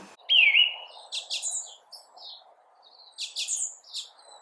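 Birds singing: a whistled note that dips and rises, then several quick, high chirpy phrases, over a faint steady hiss.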